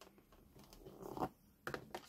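A plastic scoring stylus drawn along the groove of a scoring board, pressing a score line into foiled card: a faint scrape that builds and ends about a second and a quarter in, followed by two light clicks near the end.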